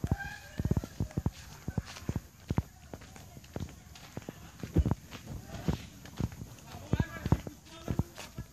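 Footsteps of someone walking over grass and bare dirt, heard as irregular low thumps about twice a second, mixed with handling bumps from the handheld phone.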